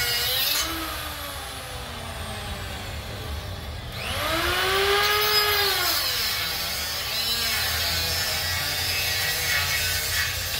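Angle grinder's disc working against a steel bar, its motor whine dipping and rising in pitch as the load changes; it eases off for a few seconds, then comes back loudest with a whine that rises and falls about four to six seconds in.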